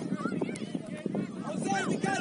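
Overlapping shouts and calls from players and sideline spectators at a youth soccer match: many short, rising-and-falling voices at once, none close enough to make out.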